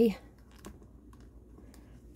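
Faint, scattered light clicks and taps from handling a jointed plastic mannequin hand and the string wrapped around its finger.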